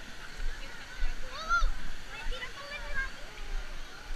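Faint background voices of children and adults at a water park, with one high-pitched child's call about a second and a half in, over a light wash of water noise.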